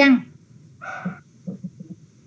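A single short dog bark about a second in, after the tail of a spoken syllable, followed by a few faint clicks.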